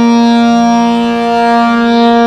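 Harmonium holding a sustained, reedy chord of several steady notes, with a lower note joining about half a second in.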